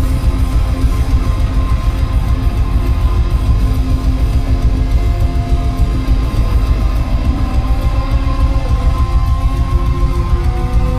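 Rock band playing live through the PA: electric guitars holding notes over bass and drums in an instrumental passage, loud and bass-heavy.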